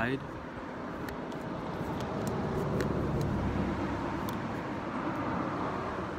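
A passing car: a rush of road noise that builds to a peak about halfway through and then slowly fades. A few faint clicks sound over it.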